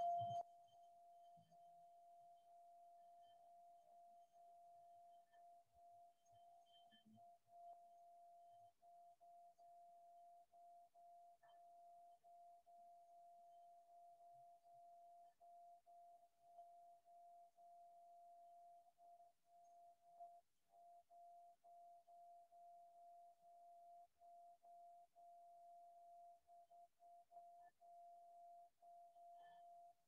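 A faint, steady ringing tone on a single pitch, a pure metallic hum that holds at an even level without fading, from a struck metal sound instrument.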